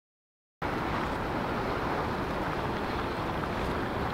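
Digital silence for about half a second, then steady wind noise rushing over the microphone.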